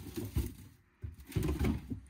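Mesh bags of flower bulbs being set into a refrigerator's plastic crisper drawer: muffled rustling and knocking in two short bouts, about a second apart.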